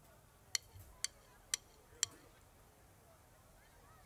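Four sharp drumstick clicks, evenly spaced about half a second apart, then stopping: sticks struck together to set the tempo for a drumline.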